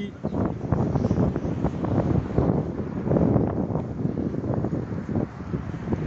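Wind buffeting a phone's microphone outdoors: a low, uneven rumble that swells and drops in gusts.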